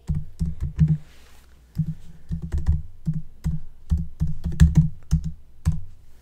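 Computer keyboard being typed on: irregular runs of keystrokes, each a short click with a dull low thud, entering a short terminal command. There is a brief pause about a second in.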